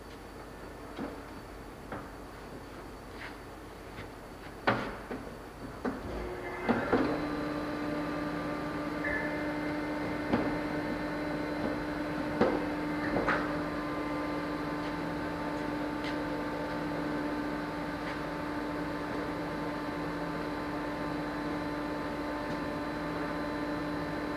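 Scattered knocks and clunks of a heavy rubber conveyor belt and its steel frame being handled and set into place, the loudest about five seconds in. About seven seconds in, a steady machine hum starts and keeps on under a few more knocks.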